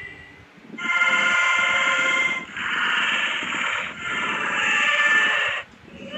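Three loud, sustained electronic tones in a row, each about a second and a half long, with a buzzy, ringtone-like quality, after a short quiet moment.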